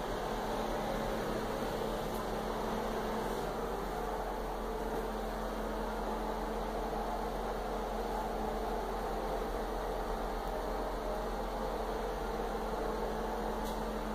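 Steady whooshing room noise with a low hum, like a fan running, unchanging throughout.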